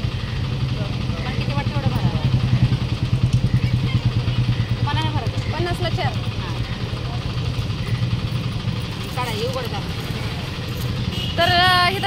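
A steady low mechanical rumble, like an engine running, under a few brief snatches of women's voices.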